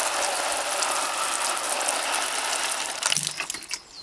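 Garden hose spray nozzle sprinkling water onto compost in a tray of plastic seed pots: a steady hiss of spray and droplets pattering on wet soil, which stops a little after three seconds in. It is a light watering, given so the compost and seeds are not washed away.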